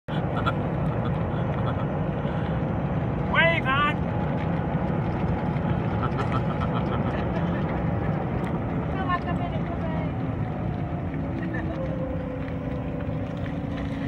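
Steady low rumble and wind noise of a moving golf cart, with faint voices over it. About three and a half seconds in comes a quick run of four rising squeaks.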